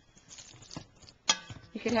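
A spoon stirring thick mashed cauliflower in a stainless steel mixing bowl: faint scraping and squishing, then one sharp knock of the spoon against the metal bowl a little past halfway, with a brief ring.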